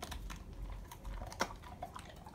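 Labrador retriever chewing a hard stick treat: a run of irregular crisp crunching clicks, with one sharper crack about a second and a half in.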